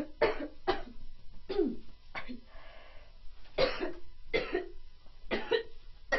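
A woman coughing in a fit: about seven short, hard coughs at uneven intervals, with gaps of up to a second and a half between them.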